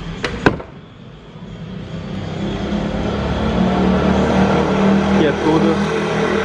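Fiat Fiorino's 1.4 flex engine idling steadily, its hum growing louder from about a second in as the rear of the van is approached. A single sharp knock comes about half a second in.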